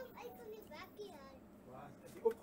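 Faint children's voices in the background, talking indistinctly.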